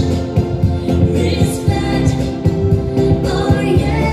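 A pop song with a steady drum beat and a sung vocal, played over a sound system.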